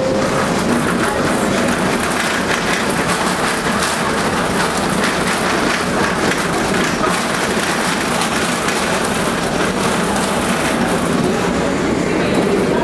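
Tram running along the street, heard from inside the car: a steady rumble of wheels on rails with light clicks.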